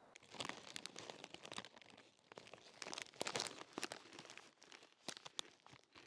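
A crisp plastic snack packet crinkling as it is handled, in irregular bursts of crackling that start just after the beginning and die away near the end.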